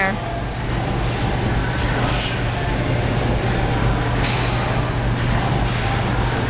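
Steady gym room noise: a constant low hum and rumble from machines and air handling, with a couple of short soft noises about two and four seconds in.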